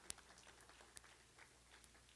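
Near silence: room tone, with a faint click just after the start and another about a second in.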